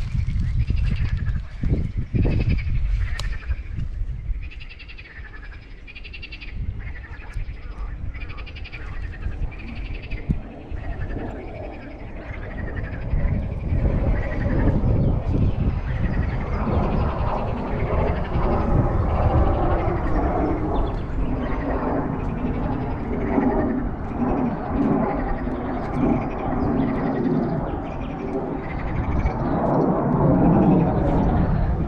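Animal calls: short high calls about once a second at first, then a denser, lower chorus from about halfway through, over a steady low rumble.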